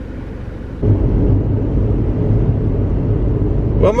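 Steady low drone of a car's engine and tyres heard from inside the moving car, starting abruptly about a second in; a quieter low rumble comes before it.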